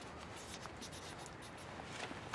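Pen writing on a small paper card, a faint run of short scratchy strokes.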